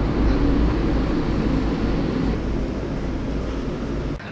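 A steady low rumble with a hiss over it, easing off slightly as it goes.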